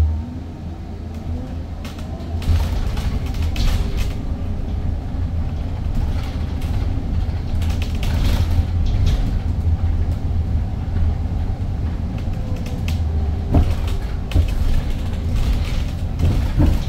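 Cabin noise of an Edison Motors Smart 093 electric bus on the move: a steady low road rumble with rattles and creaks from the body and fittings. A faint electric motor whine rises in pitch over the first couple of seconds. Near the end come a couple of sharper knocks.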